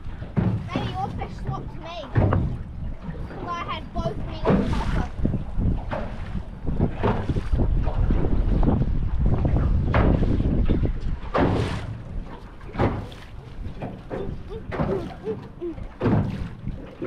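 Wind buffeting the microphone and choppy water slapping against a small boat's hull, with a steady low rumble and many short splashy knocks.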